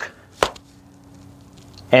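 A single sharp knock about half a second in, then a faint steady hum.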